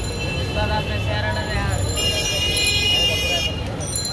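Busy street noise of voices and traffic rumble, with a horn held for about a second and a half in the second half. Under it, hot oil bubbles in a large wok as battered pieces fry.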